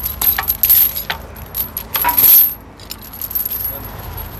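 Heavy steel tow safety chain clinking and rattling as it is fed under the bus, with a string of sharp clinks in the first second and a longer, louder rattle about two seconds in.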